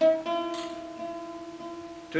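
An oud is plucked, a note at the start and a second pluck a moment later, both left ringing and slowly fading.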